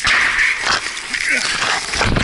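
Men's shouted voices with a few sharp cracks, typical of gunfire, the loudest crack at the very end.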